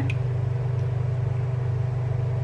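Induction hob running under a stainless steel pot of sugar-and-vinegar syrup being heated to the boil: a steady low electrical hum with a few fainter steady tones above it.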